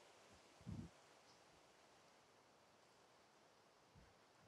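Near silence: faint outdoor background hiss, with one short, soft low thump under a second in.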